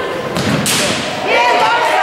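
A futsal ball struck hard, a sudden thud about half a second in that rings briefly in the hall, with players and spectators shouting.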